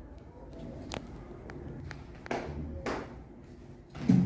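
Low classroom room noise with a few light taps and two short rustles as children shift about on their feet.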